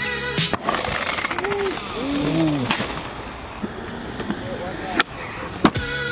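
Skateboard wheels rolling on a concrete ramp, with a sharp clack of the board striking the concrete about halfway through and two more near the end.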